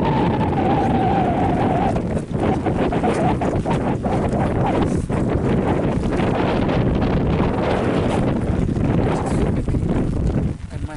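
Wind buffeting the camera's microphone: a loud, steady rushing noise with no pauses.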